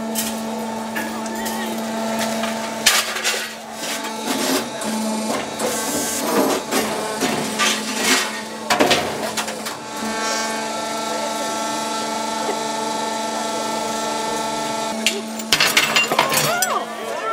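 Ron Arad's 'Sticks and Stones' machine running with a steady motor hum, with metallic clanks and clatters between about three and nine seconds in, amid crowd voices.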